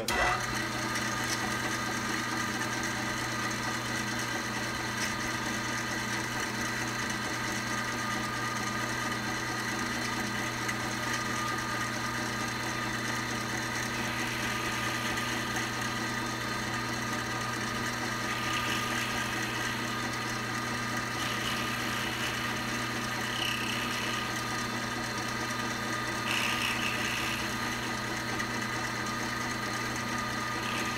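1953 BCA jig borer running steadily, its motor and spindle drive giving a constant hum made of several steady tones while the tool cuts into a brass workpiece. Short patches of rougher cutting noise come and go from about halfway through.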